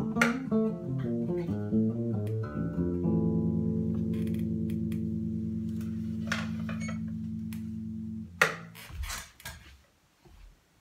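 Electric bass guitar played solo: a run of plucked notes, then a final note left to ring and slowly fade for about five seconds. It is stopped with a sharp click near the end, followed by a few knocks as the instrument is handled.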